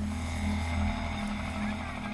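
Tense film underscore: a low synth note pulsing steadily, joined at the start by a deep bass drone.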